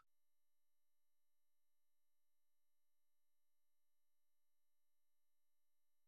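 Near silence: the sound track is essentially empty, with no audible typing or other sound.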